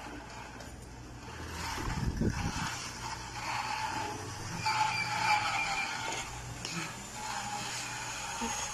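Small electric mini motorcycle being ridden: a faint motor whine that comes and goes, over a steady low hum, with a low rumble about two seconds in.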